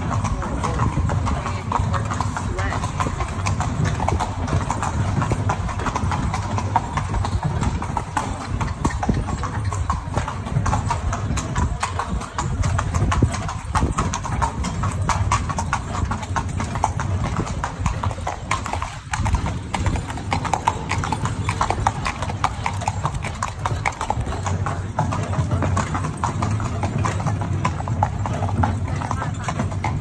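Horse's hooves clip-clopping steadily as it pulls a carriage, with a continuous low rumble under the hoofbeats.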